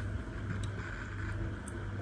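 Low, steady background rumble of room tone with a faint tick or two, while the scale is read.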